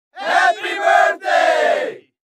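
Several voices shouting together in two long cries, the second one sliding down in pitch at the end.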